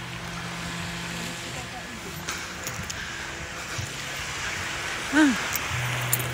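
A steady low hum over an even background rush, with one short rising-and-falling voice sound about five seconds in.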